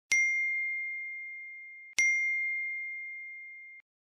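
Chat-message notification chime: a bright ding that rings at one pitch and fades, sounding twice about two seconds apart as new messages arrive.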